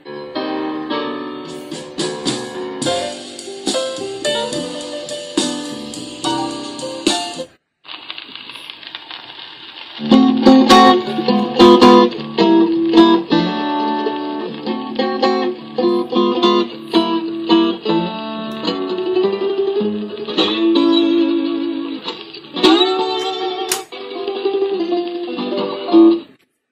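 Guitar-led recorded music played from a phone over an aux cable through a Prunus J-160 retro radio's speaker. About eight seconds in the music breaks off for a moment as the next track starts, and it comes in louder about two seconds later.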